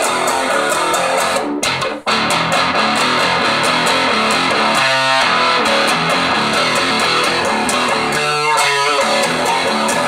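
Electric guitar, an Epiphone Coronet tuned to drop D with a Seymour Duncan Dimebucker pickup, played in a continuous loud riff. The riff breaks off briefly about two seconds in, and single notes ring out near the middle and again near the end.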